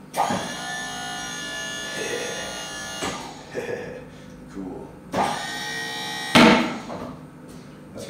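Electric motor-driven hydraulic pump of a 24 V radio-controlled wheel loader whining steadily under load as it lifts the bucket with a grown man standing in it, for about three seconds. It runs again for just over a second about five seconds in, ending in a sudden loud thump.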